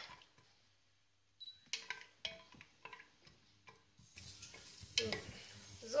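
Wooden spatula knocking and scraping against a stainless steel pot while stirring cashews roasting in a little oil: a series of light, irregular clicks, starting after a second or so.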